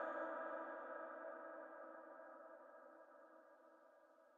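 Reverberant echo of a Quran reciter's chanted voice dying away after a phrase ends: a held tone fading steadily, with no new syllables.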